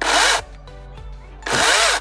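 DEWALT FlexVolt 60V MAX brushless electric chainsaw with a 16-inch bar, triggered in two short bursts: the motor and chain spin up and wind down right at the start, then again for about half a second near the end.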